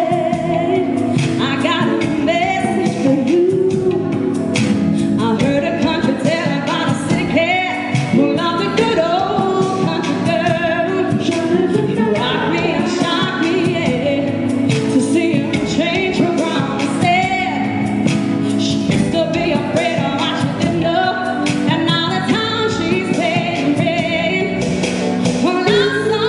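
Live pop music: a woman singing lead with a band of electric guitar, bass guitar and keyboards, a second female voice singing backing.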